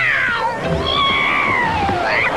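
A long pitched cry sliding steadily down in pitch over about two seconds, over background music.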